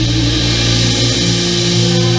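A band playing live through the stage system, with the five-string electric bass holding long sustained low notes under other held pitched notes.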